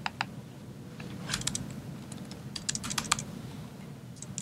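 Typing on a laptop keyboard: a couple of single keystrokes near the start, then two short runs of quick keystrokes around the middle, over a faint steady room hum.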